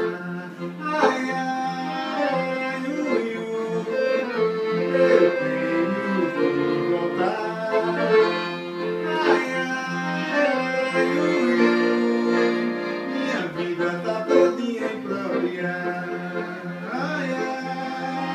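Piano accordion playing a melody over steady held chords.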